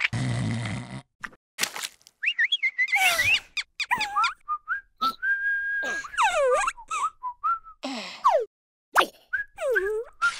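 Cartoon sound effects and squeaky wordless character voices: a short low buzzing noise at the start, then a string of whistle-like calls that slide up and down in pitch, with short pauses between them.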